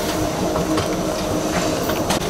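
Steady hum of factory machinery with a constant low rumble and a few faint scattered clicks.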